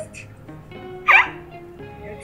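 Background music, with a single short, high-pitched burst of laughter about a second in.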